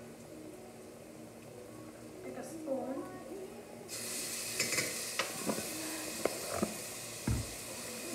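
Sofrito added to a pot of red onions in hot olive oil, setting off a sudden steady sizzle about halfway through that carries on. A few sharp clicks follow, and a heavier knock comes near the end.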